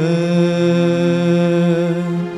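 A male singer holding one long, steady sung note as a song opens.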